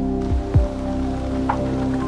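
Background music with held chords, two soft bass-drum hits about half a second in, and a short chime-like note near the end.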